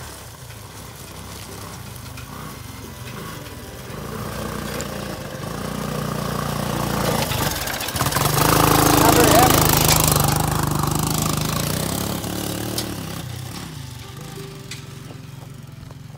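ATV (quad) engine running as the machine drives past close by: it grows louder, is loudest a little past the middle, then fades as it moves away.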